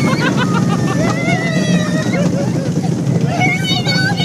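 Roller-coaster train rumbling along its track, with riders shrieking and yelling over it: one long cry about a second in, and more cries near the end.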